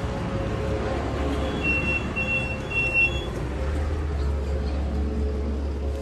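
Steady low rumble with a noisy hiss, and a run of four short, evenly spaced high electronic beeps starting about one and a half seconds in.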